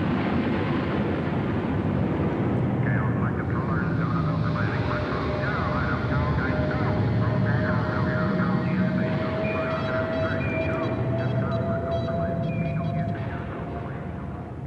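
Rocket-launch style sound effect at the start of a rock track: a steady low rumbling roar with garbled, radio-like voice chatter over it from a few seconds in, and a thin steady tone slowly rising in pitch through the second half.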